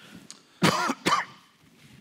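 A man coughing twice in quick succession, two short loud coughs.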